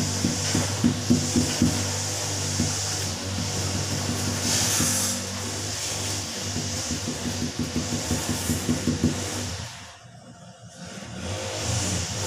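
Fist knocking repeatedly on a large glazed 60x60 floor tile, bedding it into the mortar: a run of quick knocks in the first couple of seconds and another from about the middle to near the end.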